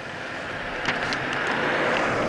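Street traffic: a vehicle passing on the road, its noise swelling steadily louder.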